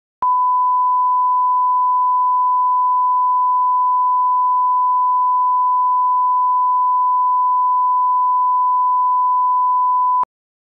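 Steady 1 kHz line-up test tone, the reference tone that runs with colour bars to set audio levels. It comes in sharply about a quarter second in and holds one unchanging pitch.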